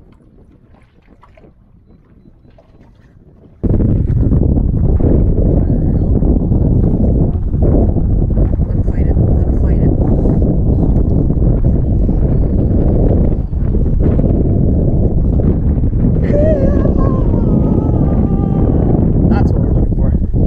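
Wind buffeting the microphone: a loud, steady low rumble that starts abruptly about three and a half seconds in and carries on unbroken.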